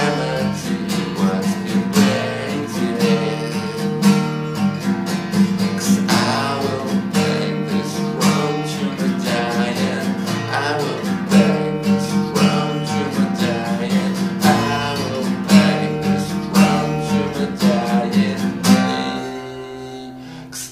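Acoustic guitar, capoed, strummed in a steady rhythm of chords, thinning out and dropping in level shortly before the end.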